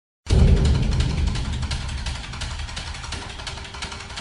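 A deep rumble with dense crackling breaks in suddenly a quarter second in and slowly fades: an opening sound effect on the show's backing track.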